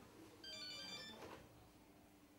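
Faint electronic phone ringtone: a short burst of high, steady tones lasting under a second, starting about half a second in.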